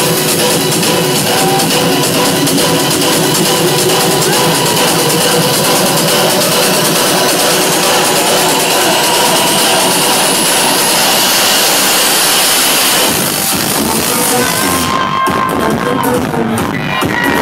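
Loud electronic trance music from a DJ set, played over a nightclub sound system. A high rising sweep runs through the middle, and the treble drops away near the end.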